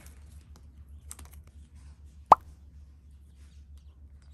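Soft rustling of small plastic sticker packs and paper being handled, with a single short, loud pop that rises in pitch a little over two seconds in.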